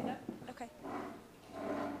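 Faint, low murmured speech from people in a room, with no distinct non-speech sound.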